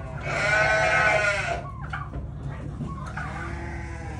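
A livestock animal bleating once: a long, wavering call lasting about a second and a half.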